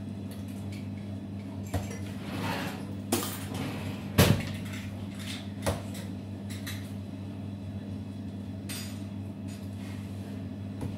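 Commercial kitchen sounds: a steady low electrical hum with a few scattered clinks and knocks of metal kitchenware, the loudest about four seconds in.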